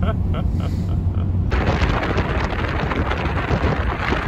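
Low road rumble inside a moving 4x4's cabin with a little soft laughter, then an abrupt cut to loud wind buffeting the microphone outdoors, a dense rushing noise with deep thuds.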